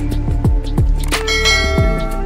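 Background music with deep drum hits. A bright, ringing bell chime comes in a little past the middle and fades out: a notification-bell sound effect.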